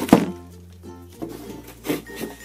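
Background music plays throughout. Just after the start there is a sharp thump as a plastic-wrapped pack of disposable shoe covers is put down on a wooden table, and a softer knock follows near the end.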